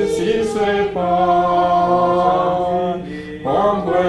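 Voices singing a slow Mandarin hymn, with long held notes and a short breath between phrases just after three seconds in.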